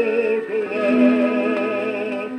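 A shellac 78 rpm record playing a Polish Christmas carol: a male singer holding long notes with a wide vibrato over an orchestra, moving to a new note about half a second in.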